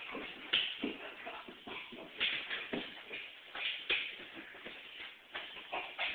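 Scuffling and irregular thumps of two people wrestling: feet shuffling and bodies knocking against each other and the floor.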